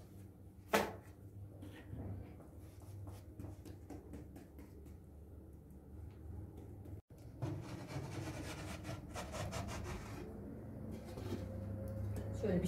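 Soft rubbing and tapping as bread dough is pressed and shaped by hand on a wooden board, with one sharp wooden knock about a second in, over a low steady hum.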